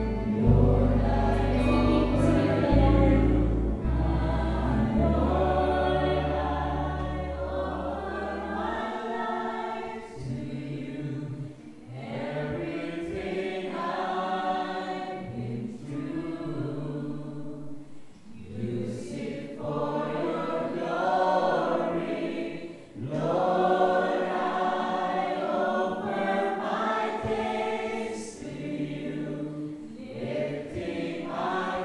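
A group of voices singing a worship song together in phrases, with low bass notes from an accompanying instrument under the first several seconds that then drop out, leaving mostly voices.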